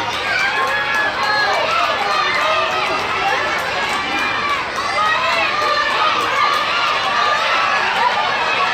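A crowd of children's voices shouting and chattering over one another, steady throughout.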